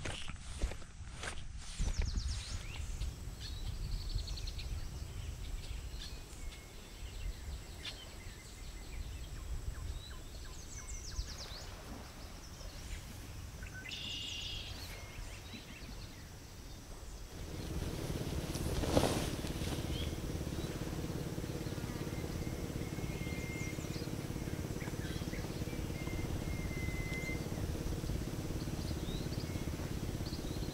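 Outdoor ambience: a few footsteps on sand at the start, then low wind rumble with scattered bird chirps. About seventeen seconds in, the background changes to a steadier, louder hum with a few faint high tones.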